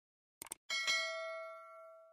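Two quick mouse clicks from a sound effect, then a bell ding from a notification-bell sound effect. The ding rings and fades out over about a second and a half.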